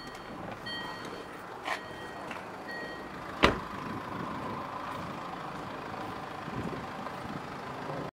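A car's electronic warning chime beeping about once a second, three or four times, then a car door shutting with one sharp thud about three and a half seconds in, followed by steady outdoor background noise.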